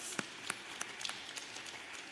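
Small audience applauding: a round of clapping that thins out and fades toward the end.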